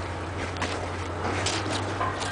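Steady low rumble and hiss of outdoor wind on the microphone, with a couple of faint short clicks.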